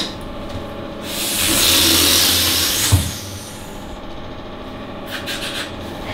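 Electric hair clippers buzzing as they cut leg hair, with a louder rasping hiss between about one and three seconds in. A few light clicks come about five seconds in.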